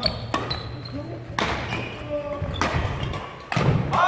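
Badminton rally: several sharp racket strikes on the shuttlecock, roughly a second apart, mixed with footfalls on a wooden sports hall floor.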